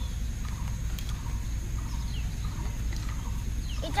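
Outdoor ambience: a steady low rumble with a few faint, short bird chirps and a thin steady high tone, and one soft click about a second in.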